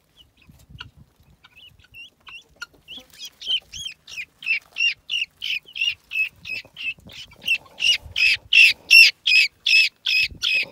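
Guinea fowl calling: a rapid run of repeated calls, about three or four a second, starting faintly a couple of seconds in and growing louder toward the end.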